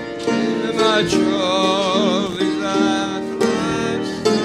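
Church hymn music played on instruments, the notes changing about every second, with a held note wavering in pitch through the middle.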